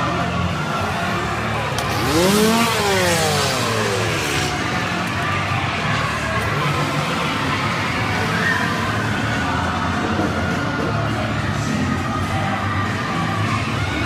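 Scare-zone ambience: a steady droning soundtrack under crowd noise. About two seconds in, a burst of hiss and one long wail that rises and then falls in pitch stand out as the loudest moment.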